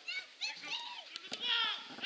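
Football players shouting high-pitched calls to each other on the pitch, the loudest call about three quarters of the way in, with a few sharp knocks of the ball being kicked.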